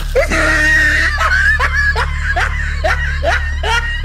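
High-pitched laughter in quick repeated rising strokes, two to three a second, over a steady low hum.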